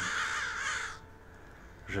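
Crows cawing, harsh wavering calls that fade out about a second in.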